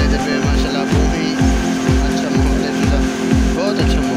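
Music with a heavy bass beat: deep thuds that fall in pitch, about three a second, over a steady low drone.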